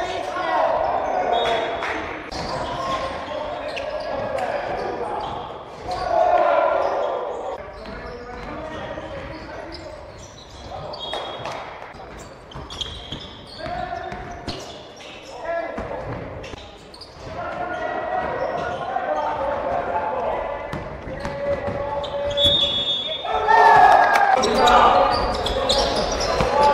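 Live game sound in an echoing gym: a basketball bouncing on the court among players' shouts and calls. The voices get louder near the end.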